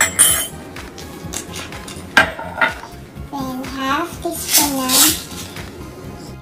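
A few sharp clinks and knocks of glassware being handled (a glass vinegar bottle and a drinking glass), the sharpest about two seconds in, over background music.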